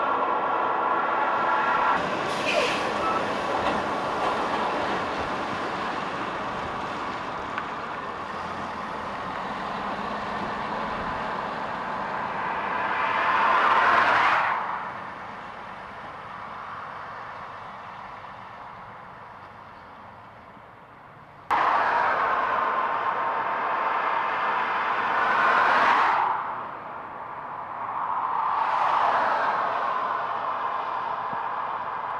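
A tractor-trailer tanker truck driving past on gravel: engine and tyre noise build to a peak and fall away as it passes. This happens several times, and in one place the sound cuts in suddenly.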